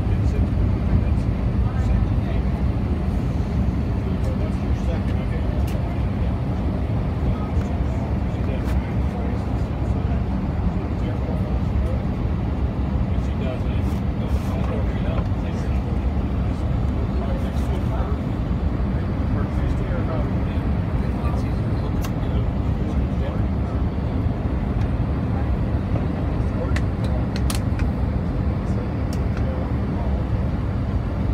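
Steady airliner cabin noise on descent: a constant low rumble of the jet engines and airflow past the fuselage, heard from a window seat inside the cabin.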